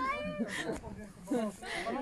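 Indistinct, high-pitched voices: short gliding calls or exclamations near the start and again about a second and a half in.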